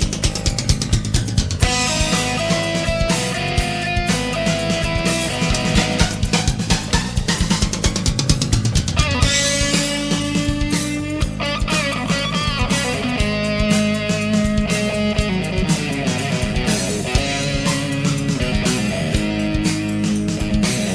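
Rock music in an instrumental stretch without vocals: guitar over a steady drum-kit beat.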